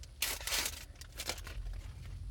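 Foil wrapper of a hockey card pack being torn open and crinkled: a tearing, crackling rush starting about a quarter second in and lasting most of a second, followed by a few shorter crinkles.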